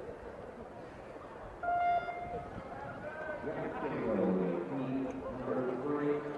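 A loud electronic start beep, one steady tone held for under a second about a second and a half in, starting an inline speed skating race, followed by voices from the trackside.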